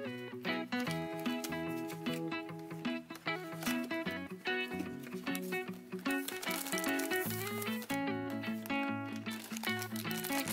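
Soft background music with a melody and a steady beat. Under it there are light rustles and ticks of a cardboard box and a foil bag being handled.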